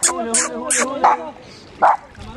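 A small dog whining and yipping as it swims, in short pitched cries that waver up and down.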